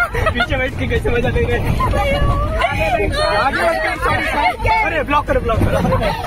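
Many voices talking over each other inside a moving van, with a steady low engine and road rumble underneath.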